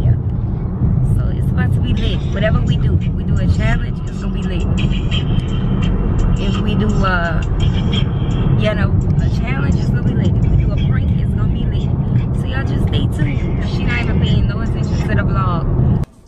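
Car cabin noise while driving: a steady low road and engine rumble, with voices and music over it.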